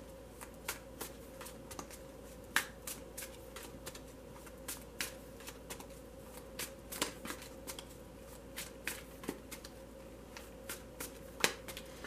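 A tarot deck being shuffled by hand, giving a string of irregular card clicks and slaps, a few each second.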